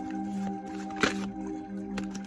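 Tarot cards being shuffled by hand, with one short rustle of cards about a second in, over steady droning background music.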